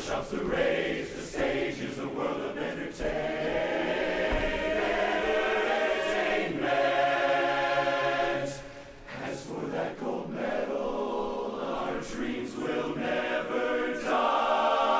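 Large men's barbershop chorus singing a cappella in close harmony, with a short drop in volume about two-thirds of the way through before the voices come back in.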